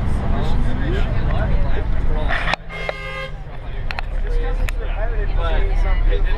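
Low road-and-engine rumble heard from inside a moving tour bus, with a vehicle horn tooting once for about a second near the middle.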